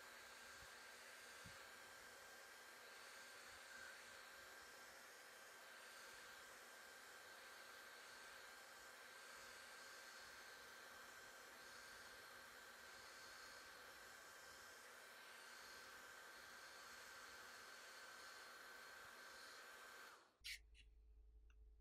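Near silence: a faint, steady hiss with a thin high tone.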